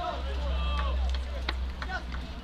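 Footballers shouting on an outdoor pitch over a steady low rumble, with a single sharp knock about one and a half seconds in.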